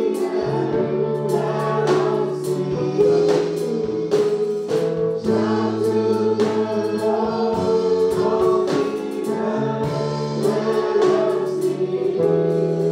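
A worship team singing a slow gospel song together into microphones, several voices in harmony, backed by a live band with drums and a low bass line that steps between long held notes.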